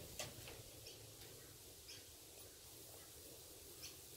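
Near silence: faint outdoor background with a few soft, scattered clicks.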